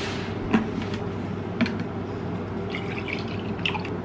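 Water running steadily from a kitchen tap, with a couple of light clicks or clinks.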